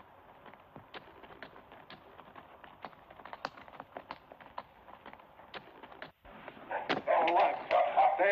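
Horses' hooves clopping in an irregular patter of short knocks. After a brief dropout, louder voices come in near the end.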